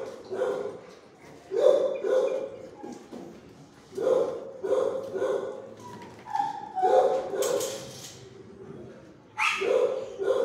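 Dogs barking in short bursts of one to three barks, a new burst every second or two.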